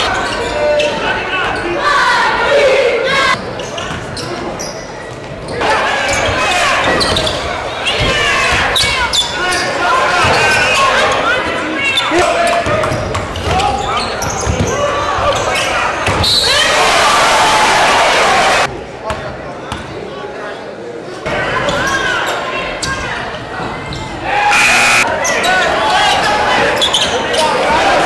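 Game sound in a gymnasium: a basketball bouncing on the court amid players' and spectators' voices and shouts, echoing in the hall. The sound jumps abruptly in level several times, notably a few seconds in, about two-thirds of the way through and near the end.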